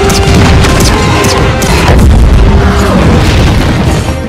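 Movie battle sound mix: a run of heavy booms and crashes from a fight with a huge creature, with energy-blast effects, over loud orchestral action music.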